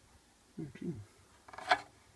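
A man's low, wordless mumbling, then about 1.7 s in a single short, sharp scrape, the loudest sound here, from handling against the subwoofer driver's metal parts.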